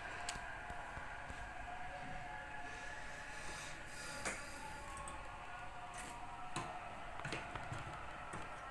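Faint scattered light clicks and ticks over quiet room tone, with a faint steady hum of tones in the background.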